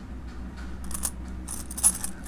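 Silver coins (half dollars, quarters and dimes) clinking against each other as fingers stir through a pile of them: scattered light clinks starting about a second in, the loudest just before the end.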